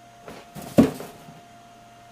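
A domestic rabbit jumping about in a plastic cage tray lined with hay: a short scuffle of paws on hay and plastic, ending in one loud thump about three-quarters of a second in.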